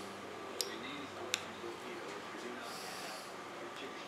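Small sharp clicks and a brief scratchy scrape from hand work with a small blade on the plastic styrene flange of a mold plug: two clicks under a second apart, the second louder, then a short scrape.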